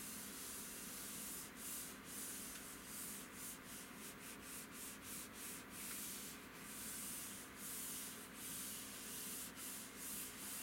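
A palm rubbing back and forth over a computer monitor's screen: a steady soft hiss broken by a brief pause at each turn of the stroke, the strokes coming faster in the middle.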